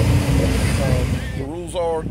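1951 Chevrolet Fleetline's engine pulling away, its sound fading over the first second or so. A man starts talking near the end.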